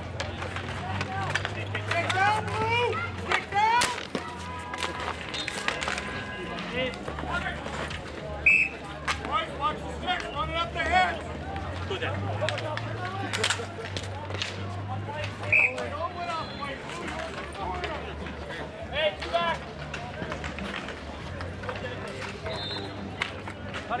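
Street hockey game on asphalt: players' and onlookers' voices calling out, broken every few seconds by sharp clacks of hockey sticks striking the ball and the pavement.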